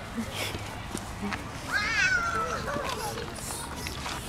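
Distant voices of people talking and calling over steady outdoor background noise. One call near the middle rises and then falls.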